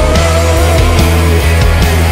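Rock band playing an instrumental passage of a Cantonese rock song: drums keeping a steady beat over heavy bass and guitars, with a lead line that bends and wavers in pitch near the start.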